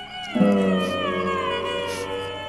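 An edited-in comic sound effect: one long, drawn-out, meow-like note that starts about a third of a second in and slowly falls in pitch.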